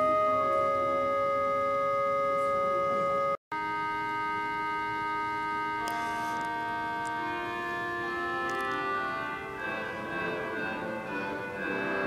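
Pipe organ playing sustained chords in a large reverberant church. The sound cuts out for an instant about three and a half seconds in. In the second half the notes change more often and the level dips a little.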